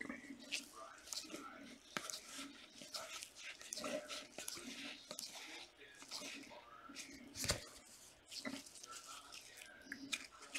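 Trading cards being handled and flicked through by gloved hands: faint rustling with scattered small clicks and snaps of card stock.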